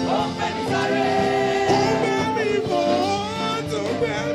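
A group of voices singing a gospel worship song, holding long notes.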